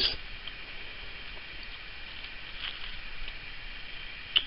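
Quiet room tone with faint handling noise: a few light rustles and taps of fingers working on a laptop's metal keyboard plate and plastic case.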